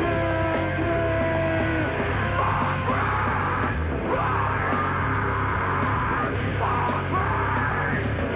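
Heavy rock band playing live: distorted electric guitars, bass and drums, with held guitar notes at first and then a voice shouting over the band.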